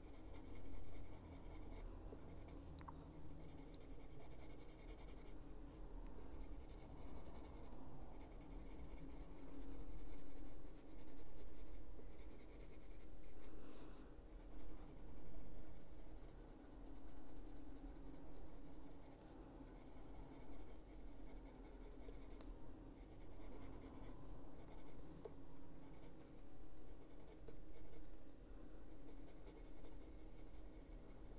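Caran d'Ache Luminance coloured pencil shading on paper: soft scratching strokes that swell and fade irregularly as the pencil is worked back and forth.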